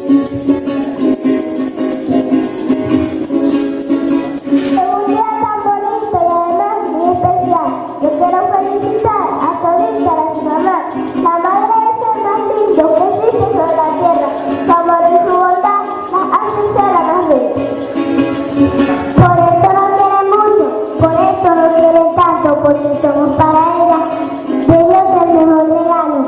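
Live folk music: a small guitar strummed with maracas shaking steadily throughout, and from about five seconds in a child singing a melody into a microphone.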